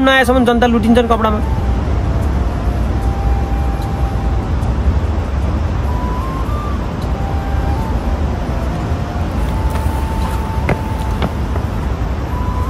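A man's voice trails off about a second in, leaving a steady low outdoor rumble of street noise. Faint background music of held notes stepping up and down in pitch sits over it, with a single sharp click near the end.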